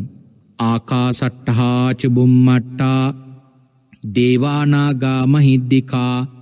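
A man's voice chanting a Buddhist blessing in a drawn-out, intoned style on a low pitch, in two phrases with a short pause between them.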